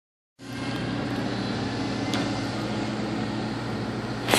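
Steady low mechanical hum with a few steady low tones, heard from inside a trash can, with a faint click about two seconds in.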